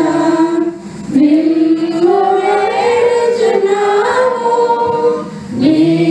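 Women's voices singing a hymn unaccompanied through microphones. The lines are sung in phrases, with short breaks about a second in and again near the end.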